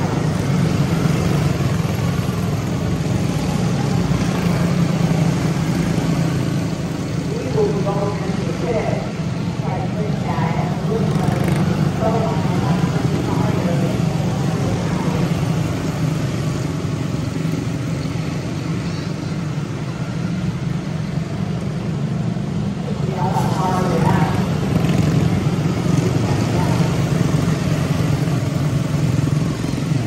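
A pack of quarter midget race cars with small single-cylinder Honda engines running laps of the oval, a steady engine drone from several cars at once. Voices talk over it at times, about 8 seconds in and again near 23 seconds.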